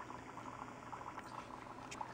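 Faint, irregular bubbling of liquid in a fog-filled cauldron, a steady scatter of small pops.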